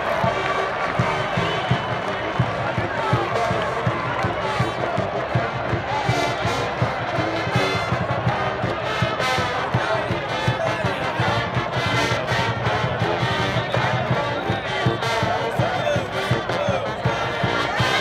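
Marching band playing in the stadium stands, brass and sousaphones over many quick drum strokes, with crowd noise underneath.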